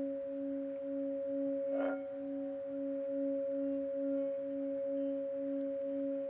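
Metal singing bowl sung by running a striker around its rim, giving a sustained ringing hum. Its low note wavers in about three pulses a second under a steadier higher overtone.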